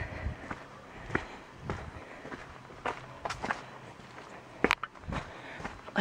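Footsteps on a dirt and rock trail, irregular steps with light scuffs and crunches, and one sharper snap about four and a half seconds in.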